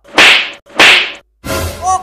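Two loud cartoon slap sound effects, about half a second apart, each a sharp smack that fades quickly, as the teacher hits a pupil.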